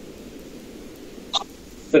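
Quiet pause filled with steady low background hiss, broken by one very brief short sound about one and a half seconds in.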